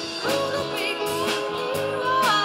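A woman singing a melody into a microphone over live band accompaniment, with evenly spaced strummed or plucked notes under the voice.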